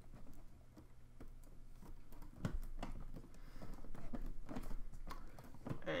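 Irregular light clicks and taps of plastic Rubik's Magic tiles and string being handled on a tabletop, busier from about two seconds in.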